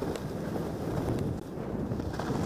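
Skis sliding and scraping over ungroomed natural snow, with wind rushing over a helmet camera's microphone.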